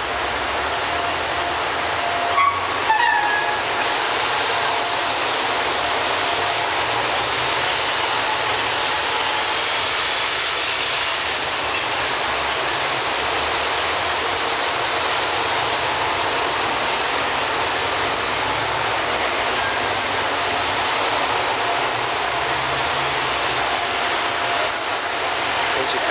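Steady, loud roar of idling diesel fire engines and street traffic, with a faint steady whine and a couple of brief clicks about three seconds in.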